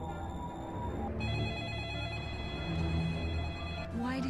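A telephone rings once: a single long ring starts about a second in and cuts off suddenly just before the end, over a low steady drone.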